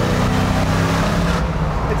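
Chevrolet V8 engine of a 1966 Chevelle restomod heard from inside the cabin at highway speed, running with a steady low drone over tyre and road noise.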